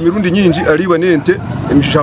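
A man speaking loudly and emphatically, his voice rising and falling in pitch, over a steady low engine hum.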